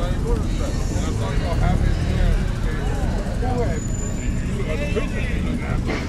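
People talking over a steady low engine rumble.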